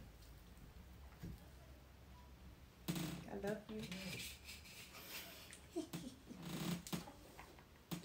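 Near silence at first, then from about three seconds in a person's voice, quiet and close, talking or murmuring in short bits.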